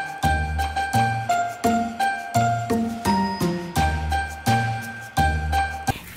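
Upbeat music with bell-like chiming notes over a bass line and a steady beat of about three strokes a second.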